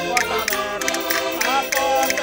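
Portuguese folk song: a mixed group of men and women singing together in unison to two concertinas (diatonic button accordions), with castanets clicking on the beat about four times a second.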